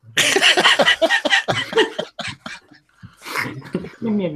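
Men laughing hard, a run of quick, hoarse bursts through the first two seconds, then scattered chuckles and a breathy exhale near the end.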